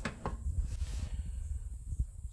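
Handling noise: a sharp click at the start and a softer one just after, then a faint low rumble as the aluminium rudder and the camera are moved about.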